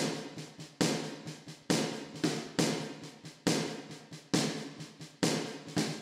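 Sampled drum hits triggered by DSP Trigger from a looped mesh snare pad signal: a loud stroke a little more than once a second with softer strokes between, their loudness set by the plugin's velocity curve.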